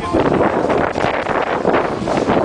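Wind buffeting the camera's microphone, a loud rough rushing that rises and falls.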